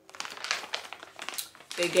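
Plastic packaging bag crinkling as it is handled, a run of irregular crackles.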